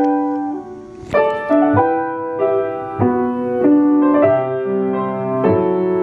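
1926 Steinway Model M 5'7" grand piano being played: a slow passage of chords, struck every second or so and each left to ring on.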